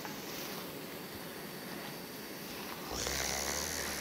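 Fried blue crab pieces sizzling in a reducing sauce in a stainless wok as they are tossed with silicone spatulas. About three seconds in, the sizzle grows louder for about a second.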